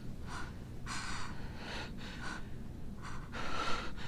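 A person breathing hard in short, ragged gasps, about six breaths, in the shaken aftermath of a struggle.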